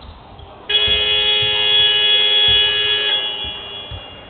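Basketball arena's game-clock buzzer sounding one long, loud horn blast as the clock reaches zero, signalling the end of the quarter. It starts abruptly under a second in, holds for about two and a half seconds, then tails off.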